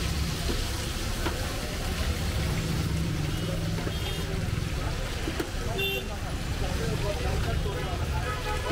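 Busy street-food stall ambience: a steady low rumble under background chatter, with a few brief high clinks around the middle.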